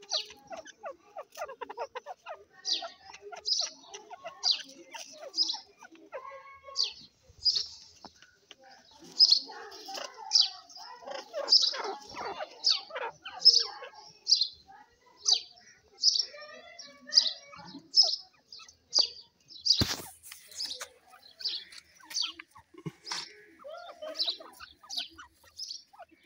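Francolins calling in a long run of short, high notes about one a second, with softer low chattering in between. A single sharp click comes about twenty seconds in.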